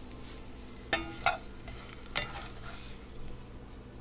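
Bacon fat sizzling in a frying pan, with three sharp clinks of a utensil about one, one and a quarter, and two seconds in.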